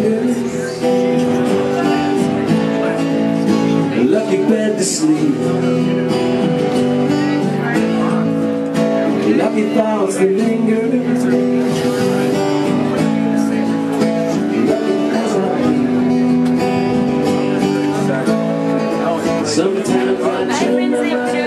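Live acoustic guitar music, chords ringing on, with a man singing into the microphone at times.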